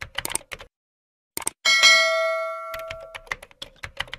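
Subscribe-button animation sound effects. First comes a quick run of clicks, then about a second and a half in a notification-bell ding that rings out and fades over more than a second, then more clicks.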